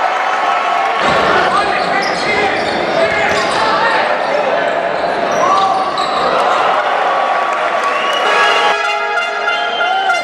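Live game sound of a basketball match in a sports hall: the ball bouncing on the court amid players' and spectators' voices.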